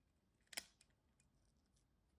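A single sharp plastic click about half a second in, followed by a few faint ticks: small plastic scale-model kit parts knocking and being pressed together in the hands.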